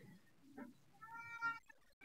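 A single faint meow, a short pitched call about a second in.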